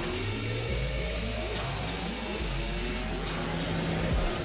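Handheld power drill running, its motor whine rising slowly in pitch, over dark background music.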